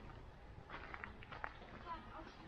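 Faint footsteps on a gravel path, with distant voices of people.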